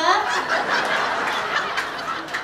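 Comedy club audience laughing together after a punchline, a dense crowd laugh that swells just after the start and holds steady.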